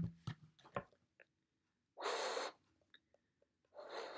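Breath blown across the mouth of plastic bottles: a short rush of air about two seconds in, then a longer one near the end with only a faint tone, the bottle barely sounding.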